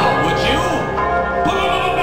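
Instrumental music from a hip-hop album: a dense layer of sustained, overlapping notes with a few short sliding pitches and no drum beat.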